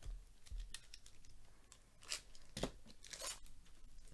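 A trading card pack wrapper being torn open and crinkled. There are a few short rips and crackles, mostly in the second half, the loudest about two and a half seconds in.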